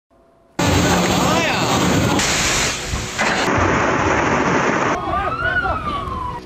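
Violent thunderstorm: strong wind and torrential rain, loud and continuous, changing abruptly a few times. Near the end a pitched tone rises and then falls.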